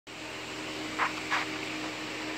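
Steady low hum and hiss of background room noise, with two brief faint sounds about a second in.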